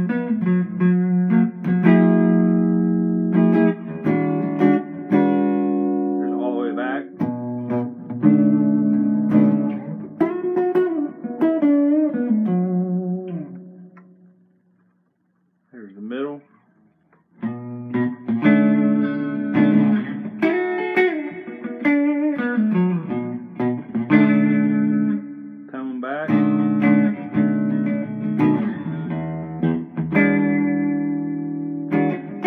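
Relic Telecaster-style electric guitar with overwound Alnico 5 pickups, played through an amplifier with its tone knob rolled back: single notes and chords with string bends. The playing stops for about three seconds halfway through, broken by one short bend, then resumes.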